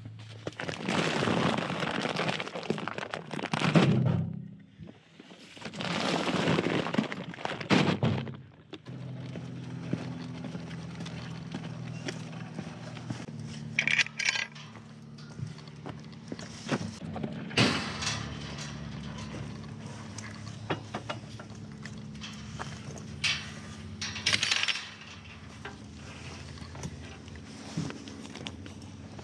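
Heavy plastic feed sacks of goat grain dragged and shifted across a vehicle's cargo floor: two long scraping rustles in the first eight seconds. After that, a quieter steady low hum with scattered clicks and knocks.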